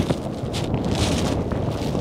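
Strong wind buffeting the microphone in a steady rushing noise.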